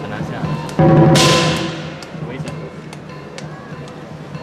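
Lion dance percussion: a steady Chinese drum beat with small cymbal clicks, and a loud accented strike about a second in, a crash of cymbals with ringing metal tones that fades out over about a second.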